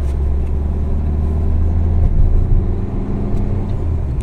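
Car engine and road noise heard from inside a moving car's cabin: a steady low rumble that changes about halfway through.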